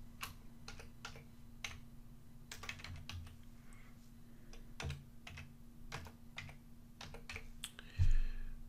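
Computer keyboard typing: irregular key clicks in short runs as an email address is typed, over a faint steady hum.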